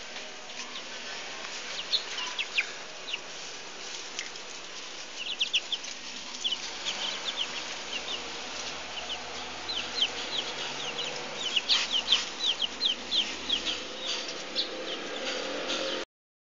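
Young chickens peeping: many short, high cheeps, each falling in pitch, sparse at first and then coming thick and fast. A couple of sharp knocks sound about twelve seconds in.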